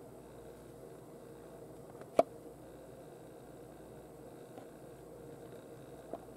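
Faint steady room hiss with one sharp click about two seconds in, from a plastic blister-card package of a die-cast toy car being handled.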